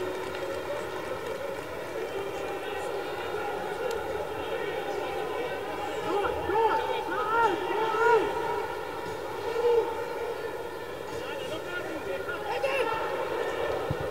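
Footballers' shouts and calls on the pitch, heard mostly in the middle of the stretch, over a steady droning hum with a fixed pitch.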